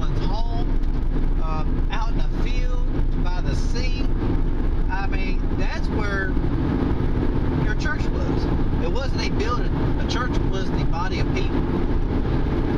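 Steady road and engine noise inside a moving car's cabin, with a voice talking on and off over it.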